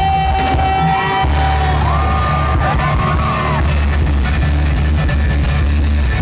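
Live band music played loud through a PA, a woman singing into a microphone over a heavy bass and drum beat. A held tone runs through the first second, and the bass comes in stronger just after.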